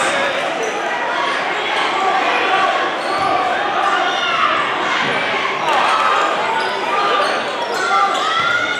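Live gym sound of a basketball game: crowd chatter filling a large hall, a basketball bouncing on the hardwood floor, and short sneaker squeaks about four to five seconds in.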